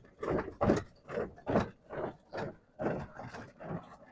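Footsteps crunching through dry leaves and dirt at a steady walking pace, about two to three steps a second.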